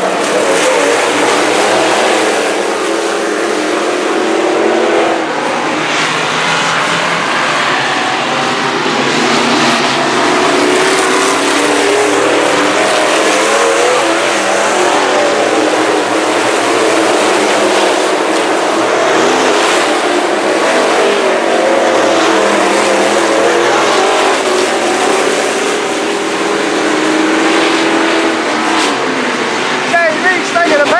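A pack of IMCA Northern SportMod dirt-track race cars running together at speed, their V8 engines loud and continuous, pitch rising and falling as they rev on and off the throttle.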